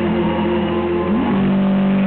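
A rock band's amplified instruments holding sustained, droning notes at the end of a song played live. About a second in, one low note slides up and settles into a steady hum.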